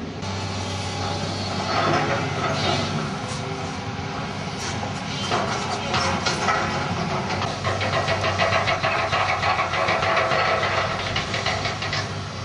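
New Holland demolition excavator at work: its diesel engine drones steadily while the arm tears into a brick-and-concrete building, with bouts of crashing, clattering rubble about two seconds in, again around five seconds, and almost continuously through the second half.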